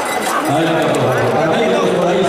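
Several people talking over one another in a crowd, a steady mix of voices with no single clear speaker.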